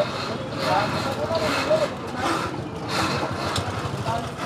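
Street ambience: a motor vehicle engine running, with people's voices in the background.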